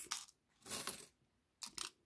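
Small metal charms clinking and jingling against each other and a mirrored tray as a hand stirs through them, in three short bursts.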